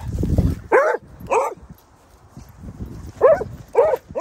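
A dog barking in play while dogs chase each other: four short, high barks, two about a second in and two more near the end. A brief low rumble comes at the very start.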